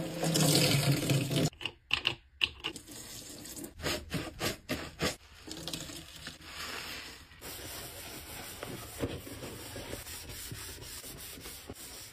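A wet pink smiley-face scrub sponge being squeezed and rubbed in soapy lather over a stainless steel sink: a loud wet squish at the start, then a run of sharp squelches and crackles, then steadier rubbing of the foam.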